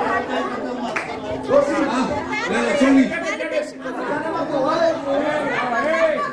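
Several people talking at once in a large hall: overlapping chatter with no single clear voice.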